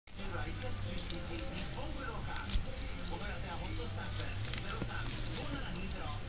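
A small bell jingling in repeated quick shakes while a cat bats and grabs at a teaser toy.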